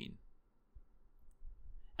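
The end of a spoken word, then a quiet pause in a man's reading, with a few faint mouth clicks in the second half before he speaks again.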